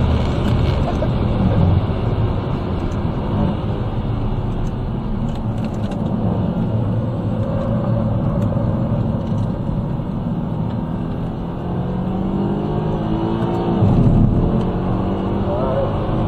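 Mercedes-AMG C63's V8 engine heard from inside the cabin at speed on a race track, running steadily through a corner, then accelerating hard out of it with its pitch climbing over the last few seconds through a gear change.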